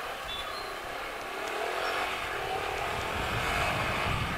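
Yamaha YBR 125G motorcycle riding through street traffic, its single-cylinder four-stroke engine running steadily among the general noise of the road. Low rumble grows toward the end.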